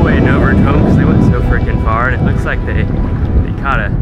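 Wind buffeting the camera's microphone, a loud, rough rumble, with a man's voice breaking through it in short stretches.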